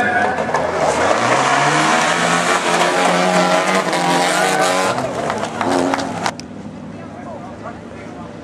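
Folkrace cars racing on a dirt track: several engines run hard, their notes rising and falling through the gears, with sharp clicks of thrown gravel. About six seconds in the sound cuts off abruptly to a much quieter background.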